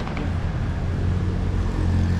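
Steady low rumble of city street traffic.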